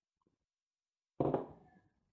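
Near silence while a man drinks from a mug, then about a second in a short breath out from him after the drink.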